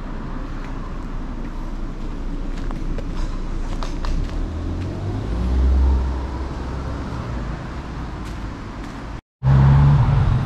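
Wind buffeting a small action-camera microphone that has no wind cover, over road traffic, with a car passing about five to six seconds in. The sound cuts out for a moment near the end.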